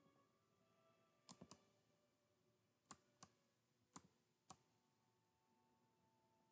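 Faint, scattered clicks of a computer mouse, about seven in all, some in quick pairs and threes.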